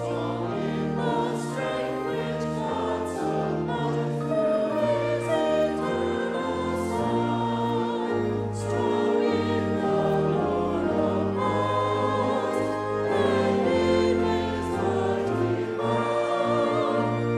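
A group of voices singing a hymn together, with instrumental accompaniment of held chords and a stepping bass line.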